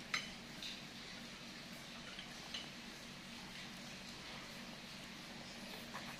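Metal forks and spoons clinking against a glass serving bowl of noodles: one sharp clink just after the start, then a few fainter taps, over a faint steady hum.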